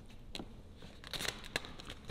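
Vinyl wrap film crinkling in a few short crackles as it is pressed and smoothed by hand onto a golf car's side panel.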